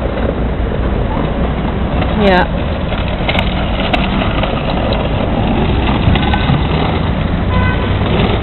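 Steady low rumble of outdoor city background noise.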